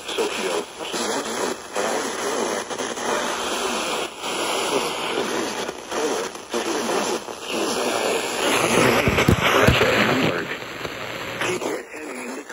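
Speech from a portable FM radio's small speaker, indistinct and mixed with hiss. A louder burst of noise comes in during the last few seconds.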